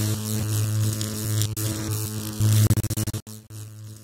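Electrical buzzing hum of a logo sound effect styled as a flickering neon light: a steady low buzz with crackle that stutters on and off about three seconds in, cuts out briefly, then comes back fainter.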